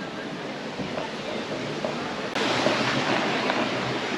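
Steady rushing water of a mill creek and a gristmill's waterwheel. It is fainter at first, then suddenly louder and brighter from a little over two seconds in.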